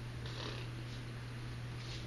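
Steady low hum of room tone, unchanging and with no other distinct sound.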